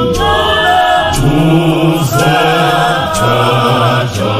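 Zion church choir singing a Zulu gospel song, several voices in harmony, with faint sharp beats about once a second.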